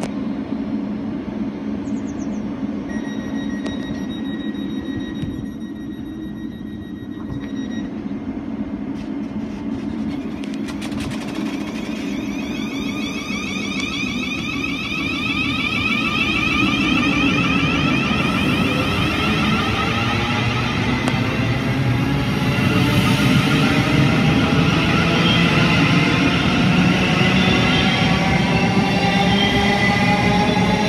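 Thameslink Class 700 electric train pulling out of the station: over a steady low hum, a high steady warning tone sounds for about five seconds as the doors close. From about ten seconds in, the traction motors whine in several rising pitches and grow louder as the train accelerates away.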